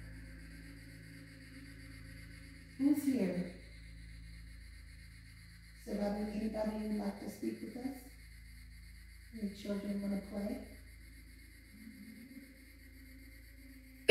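Low, indistinct voice fragments in three short bursts, about 3 s in, from about 6 to 8 s, and near 10 s, over a faint steady electronic hum.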